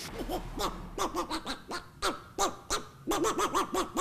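A man's voice imitating an animal call: a rapid series of short hoot-like calls, each rising and falling in pitch, about four a second, with a brief break about three seconds in.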